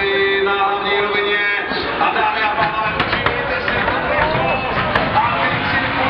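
Music and a voice over public-address loudspeakers at a racing circuit, with crowd noise in the background.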